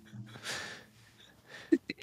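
The fading end of a man's laughter, then a breathy exhale about half a second in. A short pause follows, and a brief intake of breath with small mouth clicks comes just before speech resumes.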